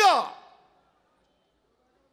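The end of a man's drawn-out spoken word, falling in pitch and fading out within about half a second, then near silence.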